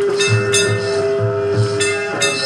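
Temple devotional music: metal bells struck repeatedly with a bright ringing, a low drum beating, and a long steady held note that stops near the end.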